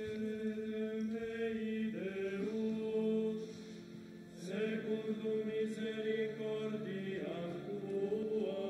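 Unaccompanied liturgical chant: voices singing a slow, held melody, each note sustained for a second or two. There is a brief drop about three and a half seconds in before the singing resumes.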